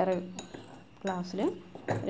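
A woman talking, with a metal spoon clinking against glass mugs.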